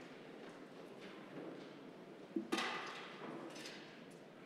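Quiet room tone of a large hall with faint rustling and shuffling of people standing. About two and a half seconds in comes a short, louder noise, and a smaller one follows about a second later.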